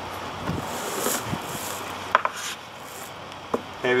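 Hands handling a hard plastic cooler as it is tipped onto its side: faint rubbing and shuffling with a few light clicks, against a low outdoor background hiss.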